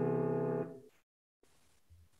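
Sustained chord tuned in 31-tone equal temperament, a stack of a tempered major third, a fifth and a septimal seventh, held steadily and fading slightly. It cuts off about two-thirds of a second in.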